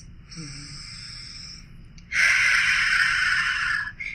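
A woman takes a slow, deep breath in, then lets out a longer, louder breath about two seconds in, as a relaxation breath heard over an online call.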